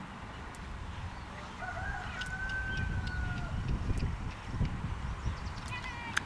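A rooster crowing once: one long drawn-out call starting a little under two seconds in and trailing off slightly lower in pitch, over a low rumble.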